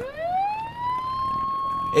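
Siren winding up: a single tone rises over about a second, then holds steady.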